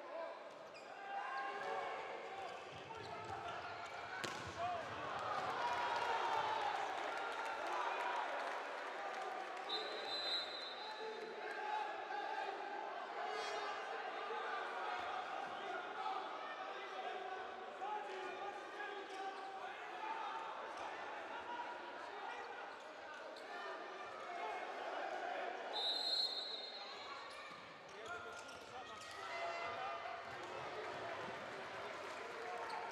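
Indoor handball game sound: the ball bouncing on the court under a steady hum of crowd and player voices in the hall. A referee's whistle sounds briefly twice, about ten seconds in and again some sixteen seconds later.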